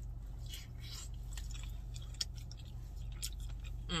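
A person chewing food close to the microphone, with wet mouth smacking and small clicks, over a steady low hum.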